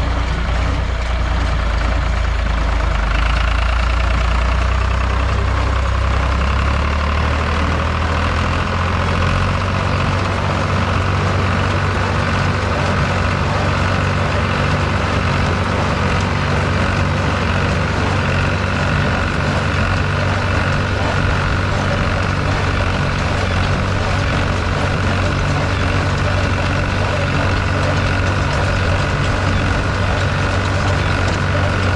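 John Deere 820 diesel tractor engine running steadily, pulling and driving a New Idea 551 square baler in the field.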